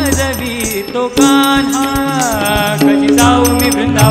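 Marathi devotional gaulan song: voices singing gliding melodic lines over a sustained harmonium tone, with tabla and other drums keeping a steady rhythm. A group of chorus voices comes in near the end.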